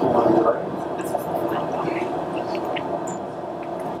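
Indistinct, low murmured voices over a steady hum.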